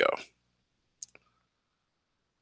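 A tight cluster of two or three short, sharp clicks about a second in, after the last of a spoken word; otherwise near silence.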